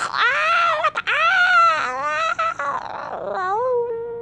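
A high-pitched human voice groaning and wailing in a run of drawn-out, wordless cries, each arching up and down in pitch, the last one held steady near the end.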